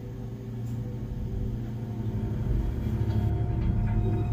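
Low rumbling drone with a few steady held tones, slowly growing louder: the build-up of a dramatic, intense intro soundtrack.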